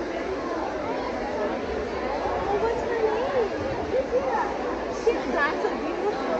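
Overlapping chatter of many voices in a crowded large hall, no single word standing out.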